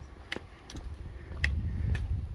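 Walking sounds from a hiker with a trekking pole: a few light, irregular clicks and taps from the pole and footsteps on the concrete footpath, over a low rumble that grows in the second half.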